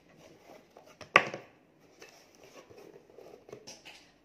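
A cardboard box being picked up and handled, with one sharp knock about a second in, then light rustling and small taps.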